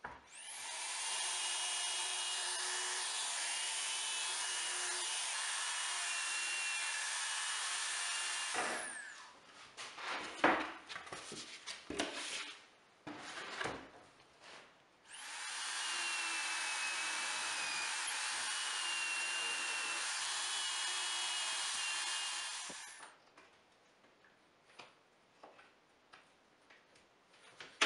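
Corded power tool held in a vertical guide stand, boring into an MDF board: two steady runs of about eight seconds each, with a steady whine, separated by knocks and clatter from handling the workpiece.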